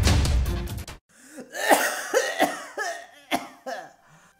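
Dramatic title music stops abruptly about a second in. A cartoon character's voice follows, coughing and clearing its throat several times.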